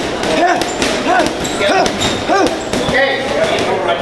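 Boxing gloves hitting heavy punching bags in a run of thuds, under a pitched sound that keeps rising and falling about every half second.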